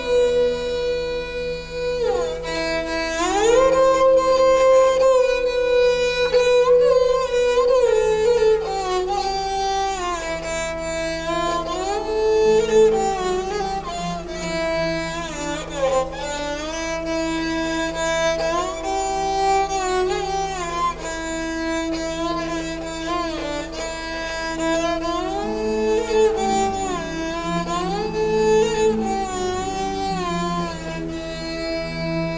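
An esraj, a bowed Indian string instrument, plays a slow melody with smooth slides between held notes. It is accompanied by steady sustained notes from a Roland VR-30 keyboard.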